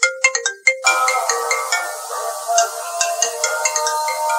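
Smartphone ringtone playing a melody of short, bright notes for an incoming call. About a second in it turns fuller, with many overlapping notes.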